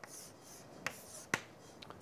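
Chalk on a blackboard as boxes are drawn around labels: a faint scratch early on and three sharp ticks of the chalk against the board.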